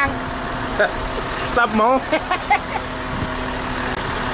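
Concrete mixer truck's engine running steadily, a constant hum while concrete is discharged down its chute.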